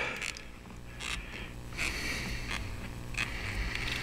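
A fountain pen's piston blind cap being unscrewed by hand, heard as faint small clicks and soft rubbing.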